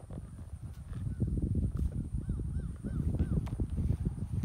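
Horse being ridden: uneven low thumps and rumble of movement heavy on the microphone, louder from about a second in, with about four short rising-and-falling chirps a little past halfway.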